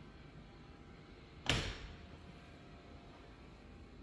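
A door being shut: one sharp bang about one and a half seconds in, with a short ring after it.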